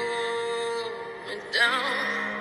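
A woman singing a slow ballad live over soft accompaniment. She holds one long steady note, then moves onto a new note with a wavering vibrato about one and a half seconds in.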